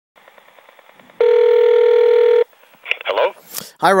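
Telephone line as a call goes through: faint crackle, then a single steady ring tone lasting just over a second, heard by the caller while it rings at the other end. A voice comes on the line just before the end.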